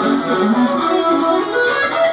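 Electric guitar playing a lead phrase of quick single notes, a passage of a solo in C-sharp minor pentatonic around the ninth fret.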